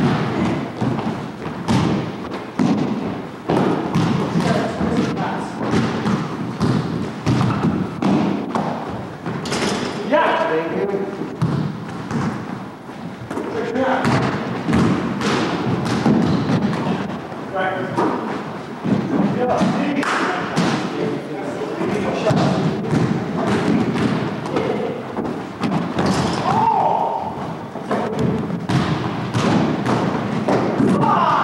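A basketball being dribbled and bounced on a hardwood gym floor, with players' feet thudding as they run, a dense run of thumps throughout. Indistinct voices and calls of the players mix in.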